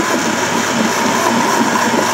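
Countertop blender running steadily on its low speed, puréeing chunks of cucumber, garlic scape and onion in red wine vinegar.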